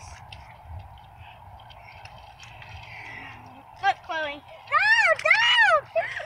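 A young child's high-pitched wordless cries: two short ones about four seconds in, then three long squeals near the end, each rising and falling.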